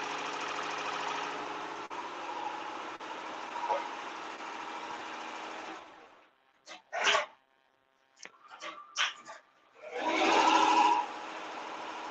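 Tajima multi-needle embroidery machine stitching out a design, running steadily. About six seconds in, the sound cuts out completely for about four seconds, broken only by a few short clicks, then the machine sound returns.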